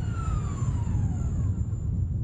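Rack-and-pinion construction hoist running, a low rumble under a motor whine that falls steadily in pitch.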